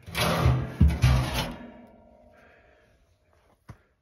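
Metal scraping and a heavy clang from the steel parts of a fire pit made from a combine wheel rim, with a rusty steel tub and a steel grate. The metal rings on and dies away over about a second and a half.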